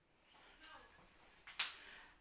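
One sharp click about one and a half seconds in, from a whiteboard marker tapping the board, over faint quieter sounds.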